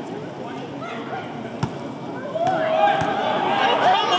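Arena crowd chatter with one sharp knock about a second and a half in, then many voices rise into louder shouting in the second half, the crowd and bench reacting to a technical foul call.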